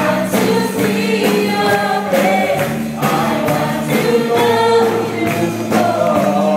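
Live praise and worship music: a band playing and a roomful of voices singing a worship song together over a steady beat.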